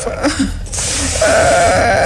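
A person crying aloud: a long, quavering, breathy sob through the second half.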